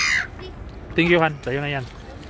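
Gulls calling: a harsh, high squawk at the start, then two louder calls falling in pitch about a second in.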